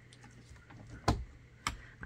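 Two sharp light clicks about half a second apart, with a few fainter ticks before them, as clear photopolymer stamps are picked up and set down on cardstock.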